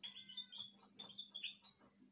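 Dry-erase marker squeaking faintly on a whiteboard in a quick run of short strokes as a word is handwritten.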